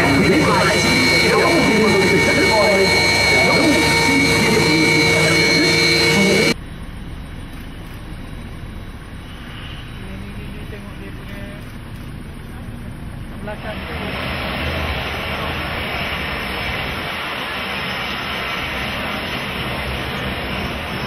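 Su-30MKM's twin AL-31FP turbofan engines running on the ground with a steady high whine, a voice talking over them. About six and a half seconds in the sound cuts to a quieter, hissing engine noise that grows louder about fourteen seconds in.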